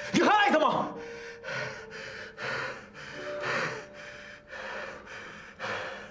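A brief shouted line at the start, then a person's ragged gasping breaths, about two a second, in an emotional outburst.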